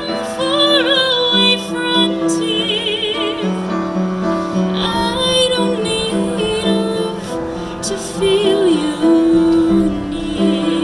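A woman singing held notes with vibrato into a microphone, amplified through PA speakers, over piano accompaniment.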